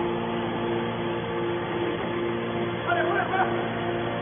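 Hydraulic power unit of a scrap-metal baler running steadily, a hum made of several steady tones. A person's voice is heard briefly in the background about three seconds in.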